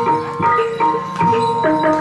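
Live Banyumas gamelan music for an ebeg horse-trance dance: struck metal-keyed instruments play a running melody of ringing notes that step up and down.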